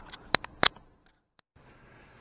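Two sharp clicks about a third of a second apart, then the sound drops out to silence for about half a second before a faint, even background returns.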